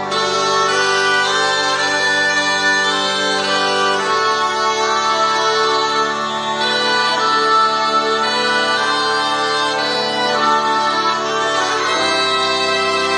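Bagpipe (cornamusa) music: a melody played over steady sustained drones, the low drone changing about four seconds in and again near the end.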